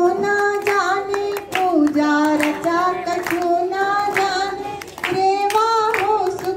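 A woman singing a Hindi devotional bhajan through a microphone and loudspeaker, in long held notes that bend in pitch, over a regular percussive beat.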